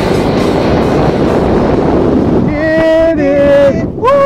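Wind rushing over a small camera microphone during a parachute descent. About two and a half seconds in, a person's voice gives a long, held call lasting about a second.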